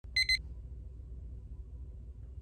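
Two quick, high electronic beeps close together, followed by a low steady room hum.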